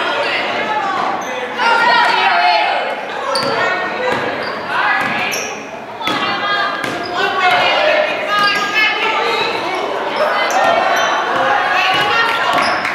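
Basketball dribbled on a hardwood gym floor, with the voices of players and spectators echoing through the gym.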